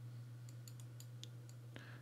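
Faint computer mouse clicks, a few scattered ticks, over a low steady hum.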